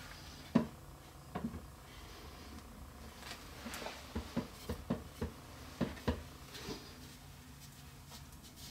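Light wooden knocks and taps as a glued wooden stool seat is set onto its post and handled: a string of short knocks, the sharpest about half a second in and most of them between three and seven seconds in.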